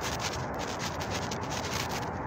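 Steady rubbing and rustling handling noise on the microphone, with quick scratchy flickers throughout.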